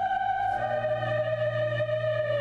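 Large mixed choir singing a sustained chord, the upper voices holding one long note while the low voices move to a new note about half a second in.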